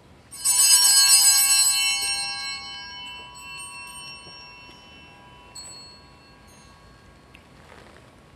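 A set of altar bells shaken once, ringing brightly with many high tones for about a second and a half, then dying away over several seconds, with a small clink about five and a half seconds in. The bells mark the priest's communion from the chalice.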